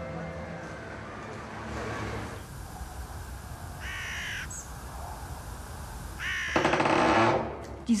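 Two harsh bird calls over a steady outdoor background hiss: a short one about four seconds in, then a longer, louder one lasting about a second.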